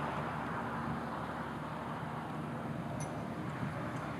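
Steady, low engine and tyre noise of cars rolling past one after another in a slow line, with a faint click about three seconds in.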